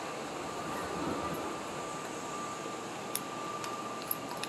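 Steady indoor background hum with a thin, steady high whine, and two light clicks near the end.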